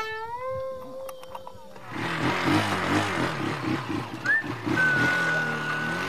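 A long, drawn-out meow-like note for nearly two seconds, then a small motorcycle engine catching and running with a rough, pulsing sound after it had failed to start. A thin whistling tone is laid over it near the end.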